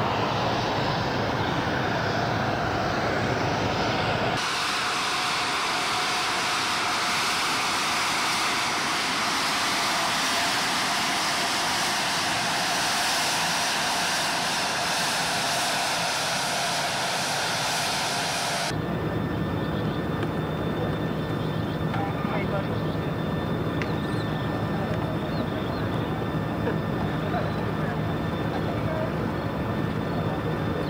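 Turbofan engines of a taxiing twin-engine business jet, a steady jet noise with a strong high hiss. The sound changes abruptly about four seconds in and again about two-thirds of the way through. After the second change the hiss falls away and a steadier idling hum with fixed tones remains.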